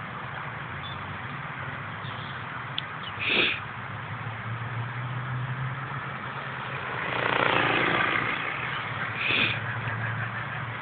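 Multiplex FunCopter electric RC helicopter flying at a distance, heard as a steady low rotor hum that grows stronger about halfway through. A louder rushing swell comes seven to eight seconds in, and two short higher-pitched calls come about three and nine seconds in.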